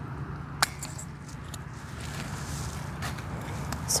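Hand pruners snipping through a muscadine grapevine shoot: one sharp snip about half a second in, followed by a few fainter clicks.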